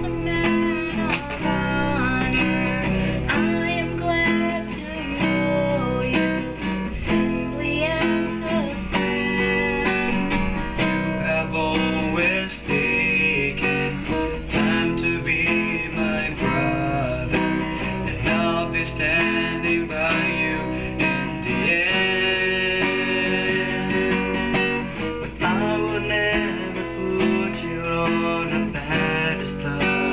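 Acoustic guitar strummed and picked, accompanying singing voices in an informal rehearsal of a worship song.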